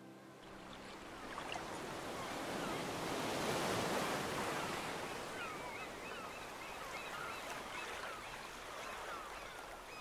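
Small waves washing over a flat rocky shore, a steady rush of surf that swells about a third of the way in and then eases off. Faint high chirps come through in the second half.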